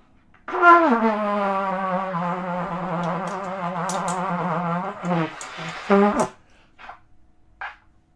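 Trumpet blown in one long low note that slides down in pitch at the start and then wavers, followed by two short blasts before it stops.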